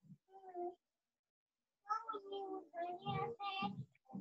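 A person's voice speaking quietly in short, broken phrases over a video call: one brief syllable near the start, then a pause, then mumbled words from about two seconds in.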